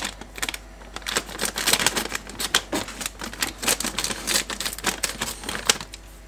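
Scissors snipping open a plastic packet of breadcrumbs, a rapid, irregular run of clicks and crinkling plastic, with the crumbs then shaken out onto baking paper.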